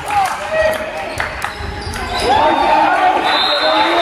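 A handball bouncing on the sports-hall floor, a few sharp thuds in the first second and a half, over the voices and shouts of spectators.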